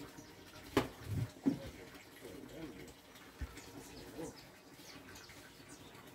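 Dry ground feed ration poured from a plastic jug onto silage in a feed trough, a faint soft rustling pour, with one sharp click near the start.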